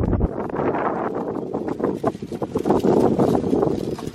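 Wind buffeting the microphone in a steady, loud rush, with scattered small clicks and rustles throughout.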